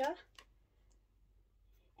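The tail of a spoken word, then a single short click about half a second in, then near silence: quiet room tone.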